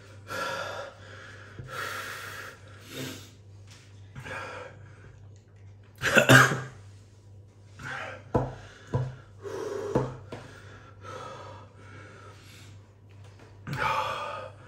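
A man breathing hard and noisily through his mouth, in repeated gasps about a second apart, the loudest about six seconds in, with a few short clicks between them. He is reeling from the burn of a chip spiced with Carolina Reaper and Trinidad Moruga Scorpion peppers.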